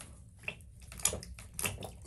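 Bathtub liner flexing under a gloved hand pressing on it near a small hole, with a few faint, separate clicks and taps. The liner is loose over water trapped beneath it.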